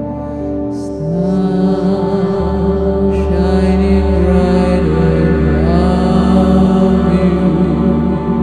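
Improvised experimental ambient music: a voice holding long notes over a sustained electronic drone made with the VCV Rack modular synthesizer. It grows a little louder about a second in, as a new held tone enters.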